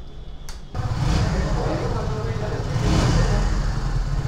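Kawasaki W175's air-cooled 177 cc single-cylinder engine running with a steady low rumble that comes in suddenly about a second in and grows a little louder toward the end.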